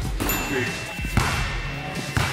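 A basketball bouncing on a hardwood gym floor, a couple of sharp thuds, under background music.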